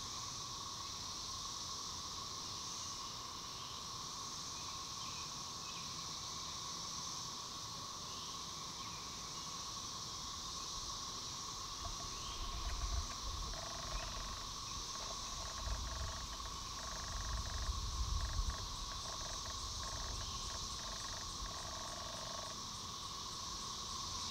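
A steady droning chorus of Brood XIX periodical cicadas, a constant hum from the many cicadas in the surrounding trees. In the middle stretch there are some short pulsing calls and a few low rumbles.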